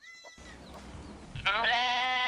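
A goat bleating: one long call starting about one and a half seconds in, over faint background noise.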